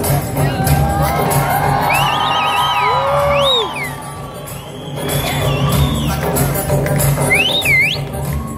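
Dance music with a steady bass beat playing through the hall's speakers, with audience cheers and whoops that swoop up and down in pitch about two to four seconds in and again near the end.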